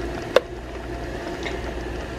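A steady low background hum, with one short sharp click about half a second in.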